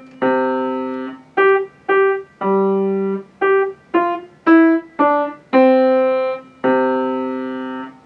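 Grand piano played by a beginner: a slow, simple tune of about ten struck notes in octaves, each fading after it is struck, with a few notes held longer than the rest.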